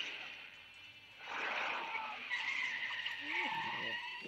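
Car tyres skidding on a film soundtrack: a rush of noise about a second in, then a long, steady high-pitched tyre squeal.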